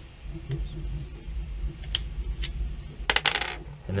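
Scattered light clicks and clinks of hard plastic and metal parts being handled while a 3D-printed foam blaster is taken apart and its pins are pulled, with a quick run of sharper clicks about three seconds in.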